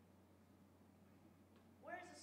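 Near silence: room tone with a faint steady low hum. Just before the end a woman's voice starts speaking again.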